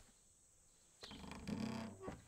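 Near silence for about a second, then a man's low voice for about a second.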